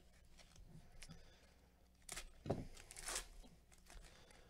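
A plastic trading-card pack wrapper being handled and torn open, with several short crinkling rips in the second half.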